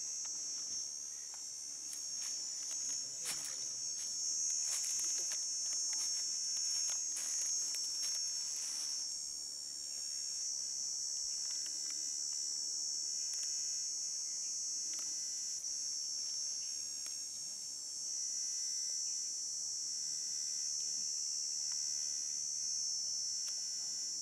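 Steady high-pitched drone of forest insects, unbroken throughout, with scattered faint clicks in the first half.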